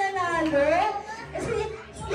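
Children's voices shouting and calling out, with one high voice drawn out and sliding down and back up in pitch in the first second.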